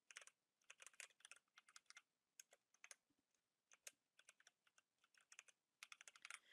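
Faint typing on a computer keyboard: a run of short, irregular keystroke clicks, several a second, with brief pauses between bursts.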